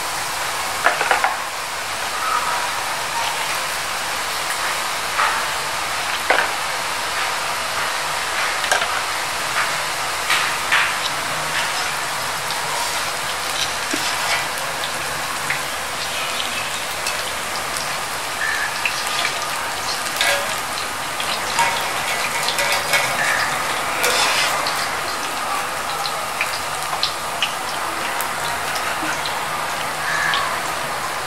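Boondi of gram-flour batter deep-frying in hot oil in a karahi: a steady sizzle peppered with sharp crackles and pops. A metal skimmer stirs through the oil.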